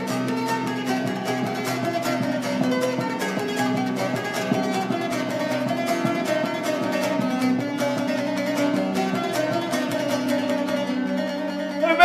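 Long-necked plucked folk lute of the tambura family playing a solo instrumental passage: fast, even picked strokes over a steady drone.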